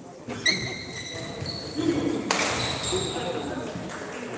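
Shoes squeaking on a badminton court floor: several high, thin squeaks during a rally, with a sharp hit about half a second in and voices echoing in a large hall.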